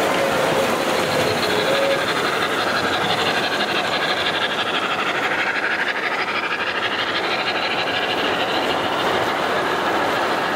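An O gauge model train rolls past: steady rumble and clatter of wheels on the track as a string of refrigerator cars goes by. A held tone sounds for about the first two seconds.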